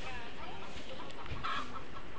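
Chickens clucking: a few short calls, with a louder one about one and a half seconds in.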